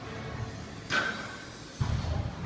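Background music playing steadily, broken about a second in by a sudden sharp clink that rings briefly, and by a low thump near the end.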